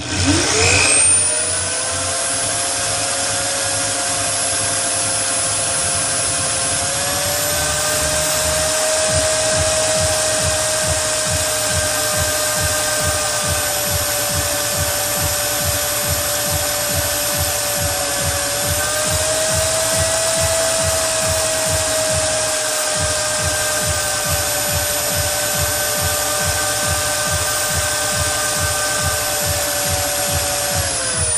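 Electric variable-speed drill running steadily, its 1/4-inch spear-point glass bit grinding into 6 mm glass under a pool of water. The whine spins up at the start, its pitch steps up slightly a couple of times, and it winds down at the very end.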